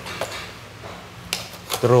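Mostly quiet, with a short crinkle of plastic packaging on a motorcycle part being handled about one and a half seconds in. A man's voice starts just before the end.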